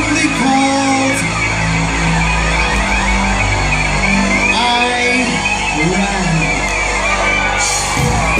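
A live new-wave rock band playing through a concert PA, heard from the audience: synthesizer, electric guitars and drums in a continuous instrumental passage.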